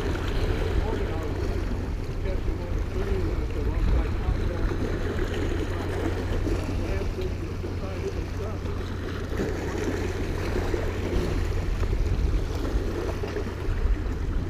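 Small waves washing and splashing against the jetty rocks, with wind buffeting the microphone in a steady low rumble.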